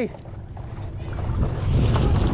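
Wind rumbling on the microphone over water sloshing around a paddle board, the noise swelling in the second half.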